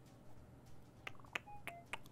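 Faint electronic sound effects of an online video slot as the reels drop for a new free spin: a few soft clicks and short beeps at different pitches in the second half.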